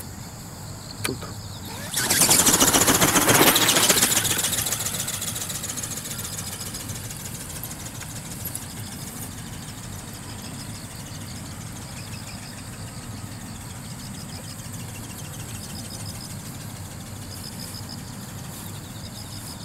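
Robot owl ornithopter's geared brushless motor and flapping wings, a fast, even buzzing whir. It comes in suddenly loud about two seconds in, then fades over the next few seconds as the bird moves away.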